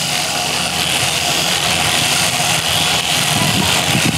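Electric sheep-shearing handpiece running steadily as its comb and cutter work through the sheep's wool.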